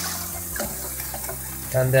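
Tap water running steadily onto lentils in a wire-mesh sieve as they are rinsed.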